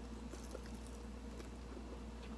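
Faint chewing with scattered soft mouth clicks as a mouthful of grilled beef large intestine (daechang) is eaten, over a steady low hum.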